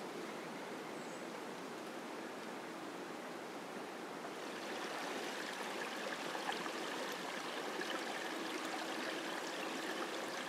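Small woodland creek running shallow over rocks. A steady rushing hiss at first; about halfway in the water grows louder and brighter, with a close trickle and babble.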